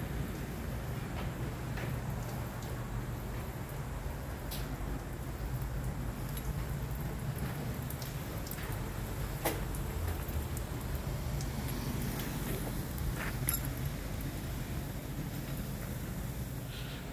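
Water dripping and pattering off a freshly washed box truck, scattered small drips over a low steady rumble.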